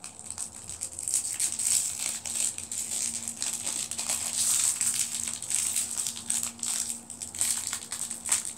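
Crinkly plastic blind-bag wrapper being torn open and crumpled by hand, a dense, continuous crackling.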